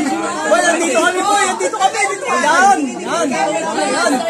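Chatter: several men's voices talking over one another.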